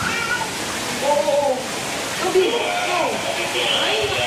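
Indistinct voices of several people talking in the background, some of them higher-pitched and rising and falling in pitch.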